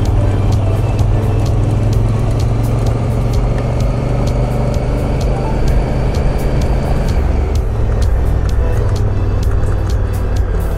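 Adventure motorcycle engine running steadily while riding a gravel road, with frequent sharp ticks of loose gravel. Background music plays over it.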